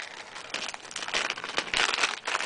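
Packaging crinkling and rustling as it is handled, a run of short irregular crackles that grows loudest near the end.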